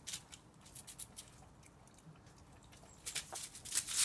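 Border collie puppies on a patio making light, irregular clicking and pattering sounds, in a cluster in the first second and a denser one near the end.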